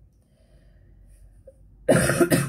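A pause with quiet room tone, then near the end a woman coughs sharply into her hand.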